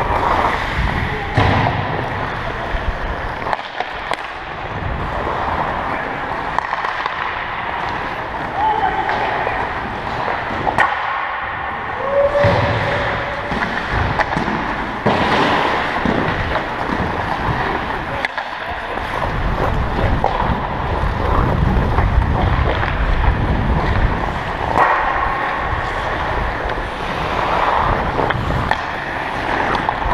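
Ice-hockey skates scraping and gliding on the ice, heard close up from the skating player, with scattered sharp knocks of sticks and puck and occasional voices on the ice.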